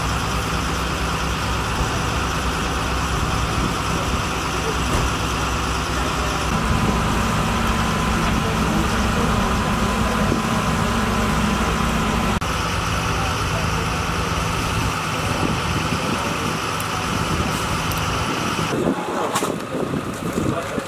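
Engine of a hydraulic rescue-tool power unit running steadily. It runs harder for several seconds in the middle, then drops away near the end.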